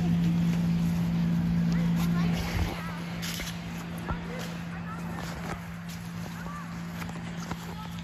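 Children's voices and calls from a game in an open field, faint and at a distance, over a steady low hum that drops in level about two and a half seconds in.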